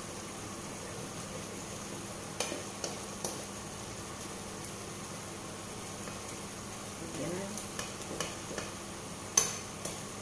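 Wooden spatula stirring thick masoor dal in a frying pan, with a steady simmering sizzle. The spatula knocks and scrapes against the pan a few times, in a group a couple of seconds in and another in the later seconds, with the loudest knock near the end.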